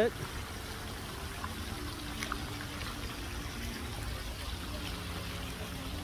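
Water from a tiered park fountain's spray jets splashing steadily into its basin.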